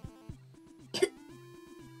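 Background music with a repeating bass line and held melody notes, and a single short cough from a woman about a second in.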